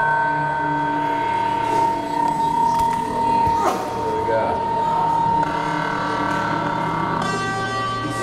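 Many electric guitars holding sustained, high drone notes together, several steady pitches at once. The pitches shift twice near the end, and there is one short click in the middle.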